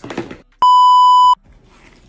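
A single loud, steady 1 kHz censor bleep, lasting under a second, with the audio around it muted, as laid over a word in editing.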